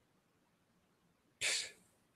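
Near silence, then about one and a half seconds in a man takes a short, sharp breath.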